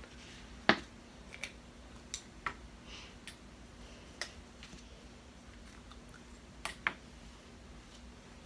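Soft tabletop handling sounds: a paper plate set down on a table with a tap about a second in, then scattered light clicks and taps as a felt-tip marker is capped and put down.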